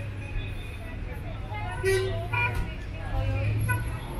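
Street traffic: a low engine hum from passing vehicles and a short car horn toot about two seconds in, with passers-by talking.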